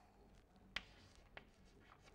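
Near silence with two faint, sharp chalk clicks on a blackboard, one a little under a second in and a weaker one about half a second later, as a line is drawn and a label begun.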